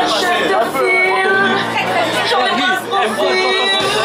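A crowd of people talking at once over music with long held notes.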